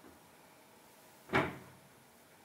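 A single sharp knock about two-thirds of the way through, dying away quickly, over the faint steady hiss of a lit gas burner.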